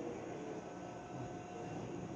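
Faint steady background noise with a faint hum, no distinct events: room tone in a pause between speech.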